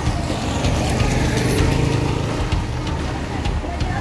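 Street traffic noise: motor vehicle engines running, with voices in the background.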